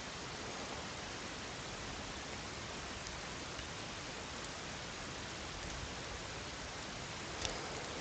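Steady low hiss of the recording's background noise, even throughout, with one faint click near the end.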